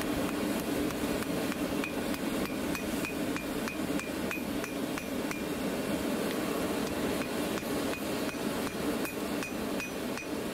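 Hand hammer forging a red-hot steel billet on an anvil: steady blows at about three a second, each with a short metallic ring, over a steady low hum.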